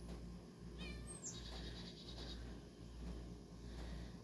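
A songbird singing faintly: a few quick falling chirps about a second in, then a high falling note that breaks into a rapid trill lasting about a second, over a steady low hum.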